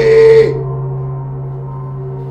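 A deep, gong-like drone rings on steadily as part of an eerie film score. A loud vocal cry, the loudest sound here, cuts off about half a second in.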